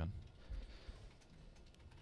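Faint, irregular clicks of typing on a computer keyboard.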